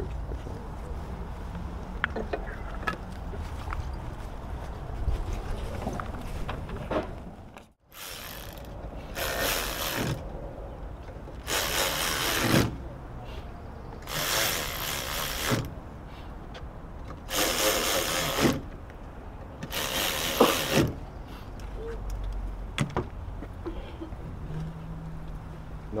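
A cordless electric ratchet runs in about six short bursts of whirring, each about a second long, in the second half. It is driving down the screws of a diesel fuel filter housing lid.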